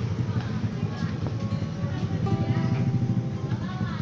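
Yamaha RX-King's two-stroke single-cylinder engine idling with a steady, rapid low putter, running normally after its ignition switch was rewired.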